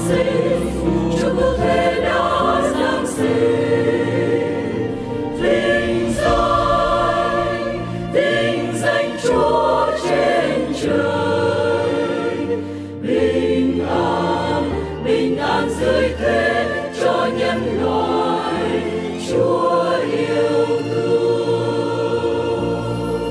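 Mixed choir of men and women singing a Vietnamese Christmas song in harmony, over accompaniment with sustained low bass notes.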